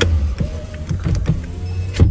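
Car's electric rear side window being raised, over the steady low rumble of the car. There are light clicks along the way and a sharp knock at the end as the glass closes.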